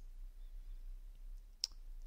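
A single sharp computer mouse click about one and a half seconds in, over a faint low hum of room tone; the click is the one that selects the character's glasses.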